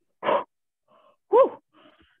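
A person's sharp sniff through the nose, mimicking a cocaine snort, followed about a second later by a short voiced exhale whose pitch rises and falls.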